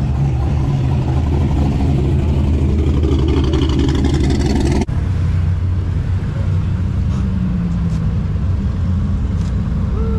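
Car engines running: a Corvette's V8 rumbling as it pulls slowly past close by, then, after an abrupt cut, a steady low engine rumble from cars idling nearby.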